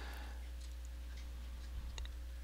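Faint clicks of a computer keyboard, a few scattered keystrokes with the clearest one near the end, over a steady low electrical hum.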